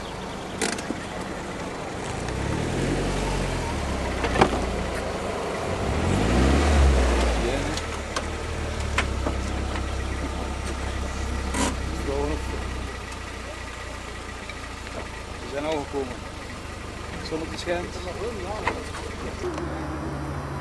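A car engine revved up and down twice, the second rev the louder, then running steadily for several seconds before it fades. Voices in the background and a few sharp clicks.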